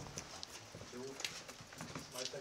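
Faint footsteps of several people in boots walking on a hard corridor floor, a step about every half second, with faint muffled voices about a second in.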